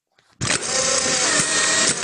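Instant camera's print motor whirring as it ejects a printed photo. It starts about half a second in, runs steadily for under two seconds and cuts off abruptly.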